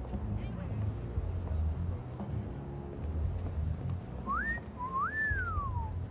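A man's wolf whistle about four seconds in: a short rising note, then a longer one that rises and falls away. A low steady rumble of background ambience runs underneath.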